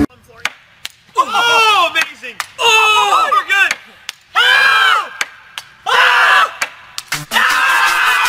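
A sharp click of a cue striking a pool ball, then a group of men shouting excited wordless yells that rise and fall, breaking into cheering near the end.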